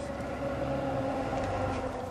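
An engine running steadily, a low hum holding one pitch.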